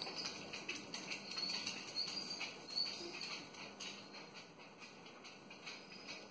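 A few faint, short, high bird chirps over quiet room tone.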